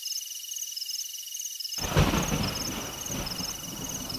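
Thunderstorm sound effect opening a song: high, rhythmic chirping over a steady high tone, then a roll of thunder breaks in a little under two seconds in, loudest just after it starts, and trails off into a steady rain-like hiss.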